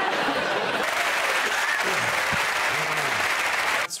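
Studio audience applauding, a steady wash of clapping with a few faint voices in it, cut off abruptly near the end.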